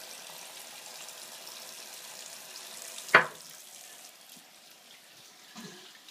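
Bathroom sink faucet running, a steady hiss of water into the basin as a small child rubs his hands under the stream. A single brief, sharp sound about three seconds in is the loudest moment.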